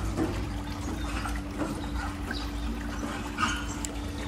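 Swimming-pool water trickling faintly over a steady low hum.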